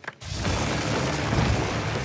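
Two drag-race cars launching off the line together at full throttle, their engines setting in suddenly just after the start and running loud and steady down the street.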